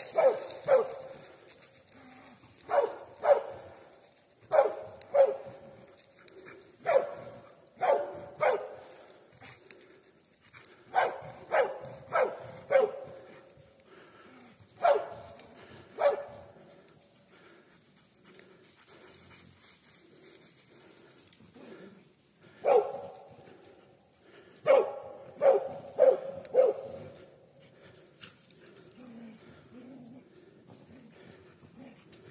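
Hunting dog barking at bay in sharp single barks, singly or in pairs every half second to two seconds, with a pause of about six seconds past the middle. It is holding a wounded wild boar at bay.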